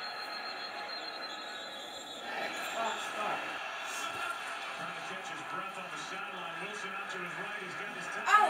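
Indistinct voices talking low: party chatter in the room mixed with the television's football broadcast commentary.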